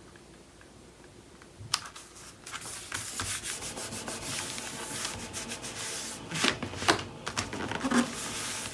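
Hands rubbing and pressing a cardstock panel down onto a paper page: a dry paper-on-paper rubbing that starts about two seconds in with a sharp tap, with a few louder knocks near the end.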